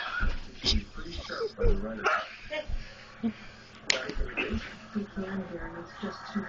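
Excited cries with scattered knocks and thumps of horseplay, and one sharp click about four seconds in.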